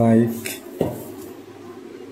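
Packaging being handled by hand: two short knocks or clacks, about half a second and just under a second in, as the polystyrene foam insert and cardboard box are handled, then faint rubbing and rustling. A voice trails off at the very start.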